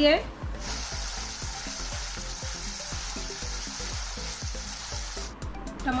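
Tomato paste frying in hot oil in a kadhai: a steady sizzle that starts about half a second in and cuts off suddenly near the end.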